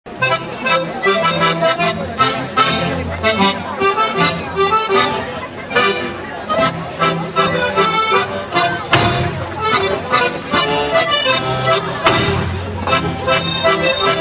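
Accordion-led Alsatian folk dance music from a small live band, with a steady bass beat. Sharp claps stand out twice in the second half.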